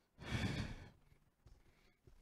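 A man's single breathy exhale, a sigh lasting under a second, picked up close by a headset microphone.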